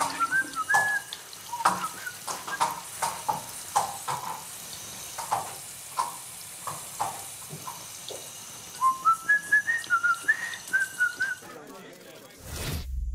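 A person whistling a tune in short notes, a few at the start and then a rising and falling run over the last three seconds. Between the whistling, water from a sink tap splashes irregularly over hands being washed.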